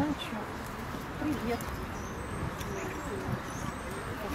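Indistinct voices of people talking in the background, with no clear words, over a steady outdoor murmur.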